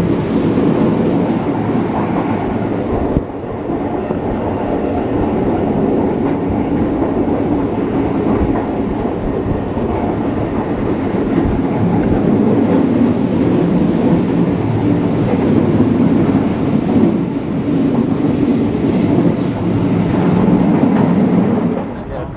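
CP 1557, an MLW-built Alco-engined diesel locomotive, running steadily at the head of the train, with wheels clattering over the rail joints. It is heard close up through an open doorway of the carriage right behind it.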